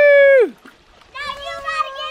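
A child's long, high-pitched held call that falls off sharply about half a second in, then, after a short pause, a second long high call starting just over a second in.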